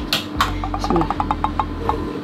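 Plastic shaker bottle being handled and opened for drinking: a few sharp clicks, then a quick even run of light clicks, with one short falling hum from a voice.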